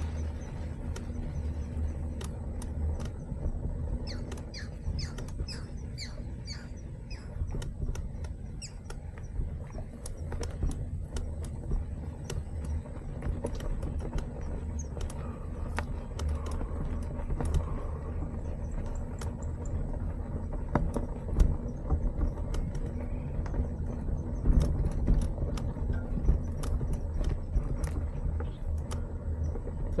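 Mountain bike riding over a rough dirt path: a steady low rumble of wind on the microphone and tyres on the ground, with frequent clicks and rattles from the bike over bumps. From about four seconds in, birds chirp for a few seconds.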